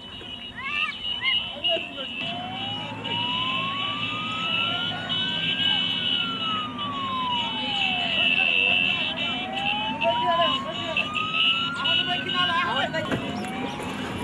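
A vehicle siren wailing, rising and falling slowly through about two full cycles, over a crowd's voices, a high shrill din and the rumble of vehicles moving in convoy.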